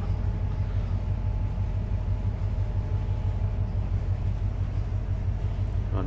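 Steady low machinery hum of a ship under way, with a deep even drone and fainter higher tones above it.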